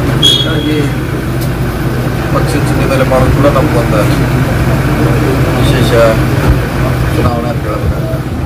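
A man speaking over a steady low hum.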